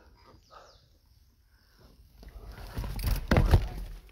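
Mountain bike rolling over a rough dirt trail, its tyres and the handlebar-mounted camera rattling. The sound is faint at first, then grows into a loud rumble in the second half.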